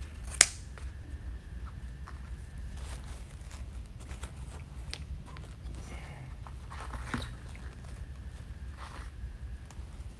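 Scissors cutting ribbon with one sharp snip about half a second in, then the soft rustling and small crinkles of ribbon being looped and pinched into a bow.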